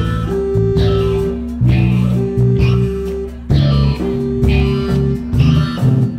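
Live rock band playing an instrumental passage: electric bass and drums keep a steady beat while a guitar holds a long note three times.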